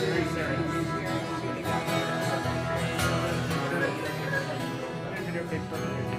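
Acoustic twelve-string guitar strummed steadily in an instrumental passage of a song, without singing.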